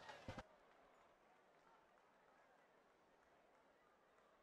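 Near silence, after a brief last trace of a voice in the first half second.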